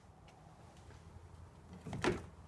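Faint low hum with a few soft ticks. Near the end comes a soft handling noise as a hand takes the car's exterior door handle.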